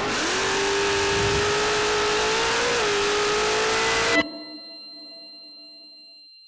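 Drag-racing Nostalgia Funny Car engine at full throttle, its note climbing steadily with a brief dip partway through. It cuts off suddenly about four seconds in, leaving a thin ringing tone that fades away.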